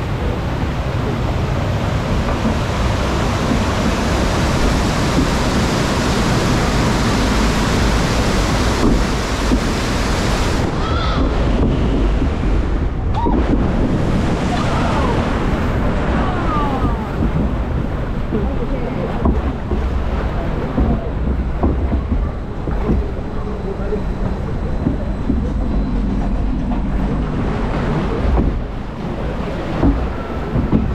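Rushing, churning water in a log flume channel as the log boat is carried along by the pumped current. A steady loud wash that loses most of its bright hiss about a third of the way through.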